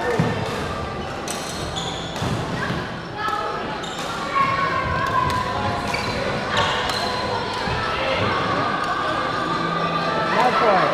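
Badminton doubles rally on a wooden indoor court: sharp racket strikes on the shuttlecock and squeaking shoes, with voices and play from other courts echoing around a large sports hall.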